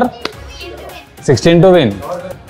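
Children's voices calling out during a backyard cricket game, with one long, loud call about a second and a half in.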